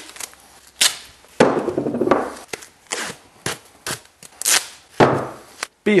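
Duct tape being pulled off the roll and torn in several quick rasping rips, with knocks and clatter as it is wrapped around a hair dryer and pipe.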